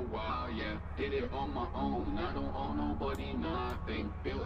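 A rapped vocal track played back through iZotope VocalSynth 2's BioVox module, which reshapes the voice's nasality, vowel shapes and formants. A steady low drone runs underneath.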